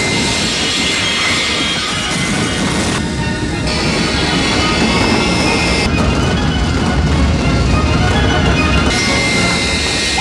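Film soundtrack of a jet airliner belly-landing on its nose: a loud, continuous roar of engines and sliding, mixed with dramatic music. The roar dips briefly about three seconds in.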